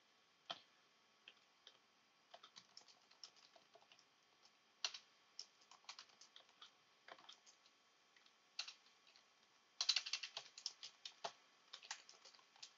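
Faint typing on a computer keyboard: irregular single keystrokes, with a quicker run of keys about ten seconds in.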